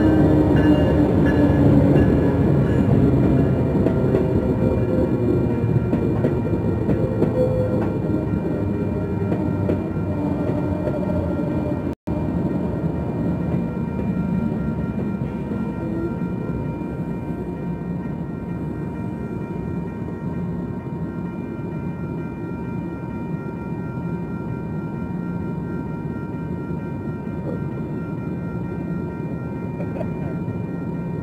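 An Amtrak passenger train led by a Siemens Charger SC-44 diesel locomotive passing close by. The locomotive's engine falls in pitch as it goes by, then the passenger cars roll past with steady wheel-and-rail rumble. The grade-crossing warning bell rings over it, and the sound drops out for an instant about twelve seconds in.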